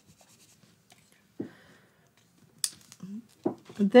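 Faint rubbing of a foam finger ink dauber along the cut edges of a paper piece, blacking out red card that shows at the edge. A soft knock comes about a second and a half in, and a sharp click a little after two and a half seconds.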